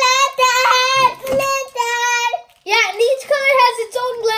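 A child singing a wordless tune in high, held notes, with a brief break about two and a half seconds in.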